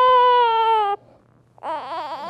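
Prematurely born infant crying on a parent's shoulder: one long, steady cry that breaks off about a second in, then after a short pause a second cry starts near the end.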